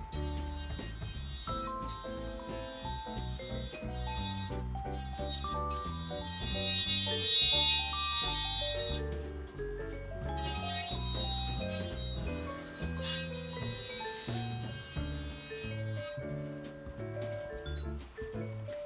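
Background music: a melody of changing notes over a bass line.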